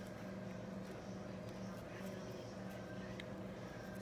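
Steady low background hum, with a couple of very faint ticks.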